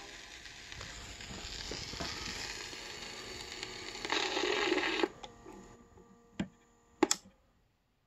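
Hiss and crackle of a 78 rpm shellac record's surface noise as the song ends on a suitcase record player, cutting off abruptly about five seconds in. Then two sharp clicks about a second apart.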